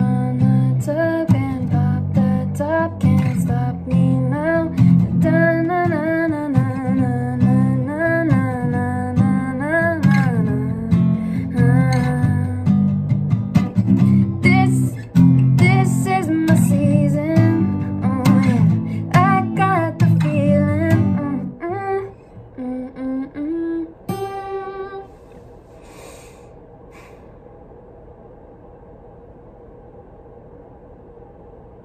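Acoustic guitar strummed in chords under a woman's voice singing a melody without clear words, a melody being worked out for a new song. The guitar stops about two-thirds of the way in, and a few last sung notes follow on their own.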